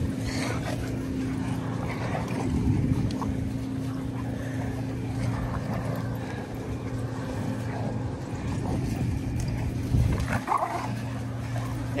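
Several dogs playing together, with scuffling and dog play noises over a steady low hum, and a brief louder sound about ten seconds in.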